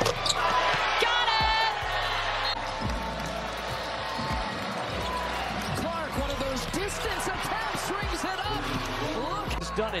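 Basketball game sound from a televised college women's game: a ball bouncing on the hardwood court amid arena noise, over background music with a steady bass line.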